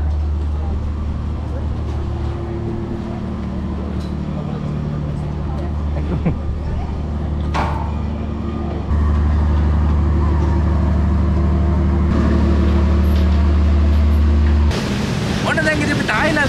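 Diesel engines of a docked passenger ferry running at idle, a deep, steady drone. It changes slightly in tone a couple of times and cuts off near the end.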